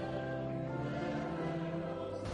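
A choir singing, holding long steady notes.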